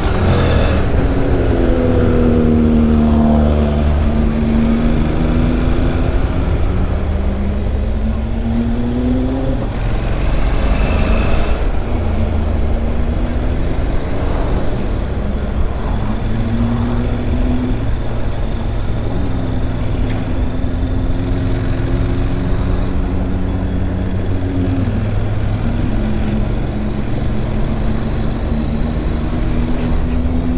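Honda NC 750's parallel-twin engine under way on a mountain climb, its pitch rising and falling as the throttle opens and closes. Heavy wind rumble on the handlebar-mounted microphone.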